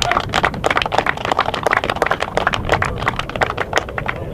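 A small group of people applauding, dense quick hand claps that die away near the end.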